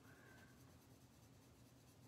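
Very faint scratching of a coloured pencil stroking on paper, near silence.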